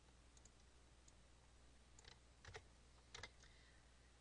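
Faint computer mouse clicks over a low steady hum, with the clearest as two quick pairs about two and a half and three seconds in.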